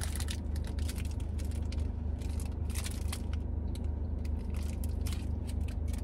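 Chewing a Rice Krispies Treat close to the microphone: a dense, irregular run of crisp crackles from the puffed rice. Under it is the steady low hum of a car, heard from inside the cabin.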